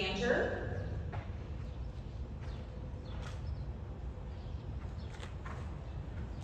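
Horse trotting on sand arena footing: faint, muffled hoofbeats over a low background hum.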